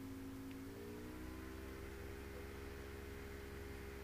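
Steady low machine hum with a few faint steady tones, which glide slightly up in pitch about a second in and then hold, over a faint hiss.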